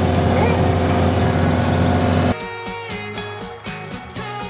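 Steady loud cabin noise of a campervan on the move, engine drone and road noise with a low hum, cutting off abruptly a little over two seconds in. Background music with a steady beat and a plucked guitar takes over.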